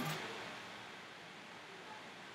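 Faint steady hiss of background room tone, just after the tail of a spoken phrase fades at the very start.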